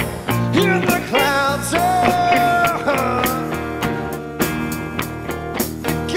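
Live blues-rock band playing: a harmonica carries the lead with bent and held notes, one long held note about two seconds in. Under it are strummed acoustic guitar, electric guitar, bass, and a steady beat on snare and hi-hat.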